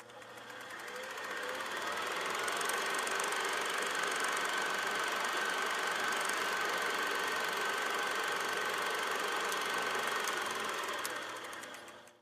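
A steady mechanical whirring noise with a faint high tone, fading in over about two seconds and fading out near the end.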